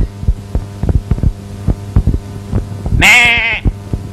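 Film soundtrack: a steady low hum under a quick pulse of soft low thumps, about three or four a second. About three seconds in, a short, loud, wavering pitched cry breaks in.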